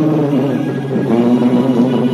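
Sattriya dance music: a voice singing long, wavering notes, the second note held steadily.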